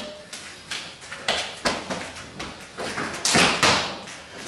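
Silat partner drill: a quick series of sharp slaps and dull thuds as strikes land on a training partner's body and bare feet step on a mat, with a louder rushing swish about three seconds in.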